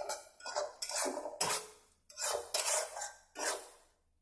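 Steel spatula scraping and stirring thick frying masala around a frying pan, in quick repeated strokes about two or three a second, with a short pause about two seconds in. The strokes stop just before the end.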